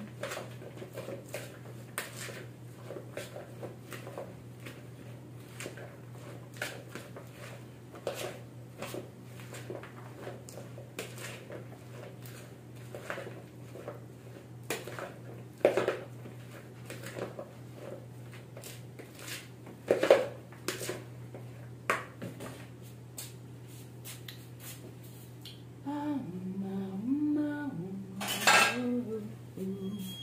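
Spoon stirring and tossing salad in a plastic bowl: many light clicks and scrapes, with a few sharper knocks. Near the end a louder clatter of crockery as a plate is handled.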